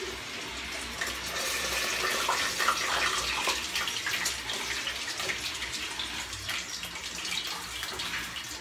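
Pork hock (crispy pata) deep-frying in hot oil in a pot, a steady sizzle with many small crackling pops, busiest a few seconds in.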